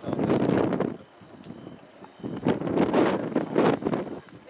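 Aerial firework shells bursting in quick volleys of booms and crackle: one cluster in the first second, then a second, denser cluster starting about two and a half seconds in and running on.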